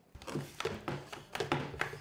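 A quick run of light knocks and taps, about eight to ten in two seconds: framed photographs being picked up and set down on a counter top.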